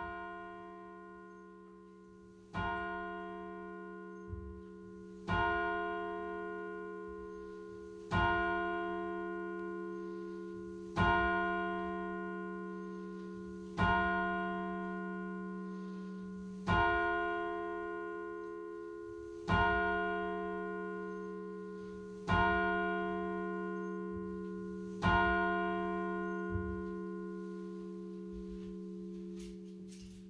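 Slow keyboard music: the same ringing chord struck ten times, about once every three seconds, each stroke fading away over a held low chord.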